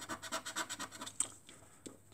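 A coin scratching the latex coating off a scratchcard: a quick run of short rubbing strokes, about ten a second, fading out after about a second and a half.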